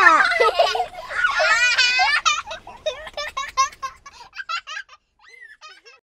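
A little girl and a woman laughing together: loud laughter at first, then a run of short laughs that grows sparser and quieter towards the end.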